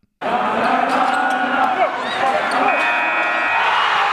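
Sports arena crowd noise, with a buzzer sounding for about a second near the end, like a game-clock horn at zero.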